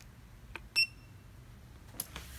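A small button click, then a single short electronic beep from a Cascade Power Pro spin-bike console as it is switched off at its power button. Another faint click comes near the end.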